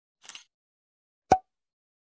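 Sound effects for an animated title card: a faint brief hiss early on, then a single sharp pop a little over a second in.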